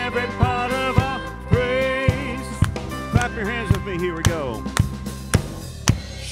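Contemporary worship song performed live: women's voices singing the melody in harmony over piano and keyboard, with a steady drum beat about twice a second.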